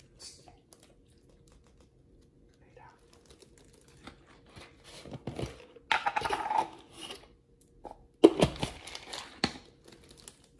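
Plastic bag and paper tissue crinkling as they are handled, in two short bursts: one about halfway through and one near the end.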